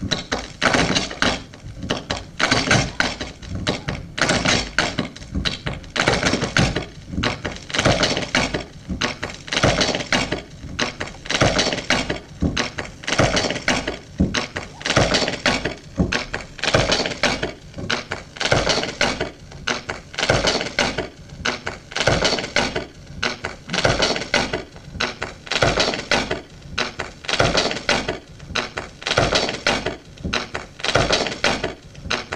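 A turntable played as an improvising instrument: the stylus riding a gramophone record gives a dense, pulsing stream of knocks, crackles and scrapes rather than recorded music.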